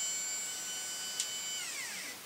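Stepper motor of a homebuilt CNC router whining at a steady pitch as it drives the gantry along the X axis by chain and sprocket, with a light click about a second in. Near the end the whine glides down in pitch as the motor slows to a stop.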